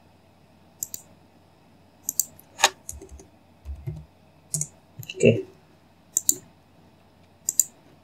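Computer mouse and keyboard clicks: about half a dozen separate sharp clicks, spaced a second or more apart.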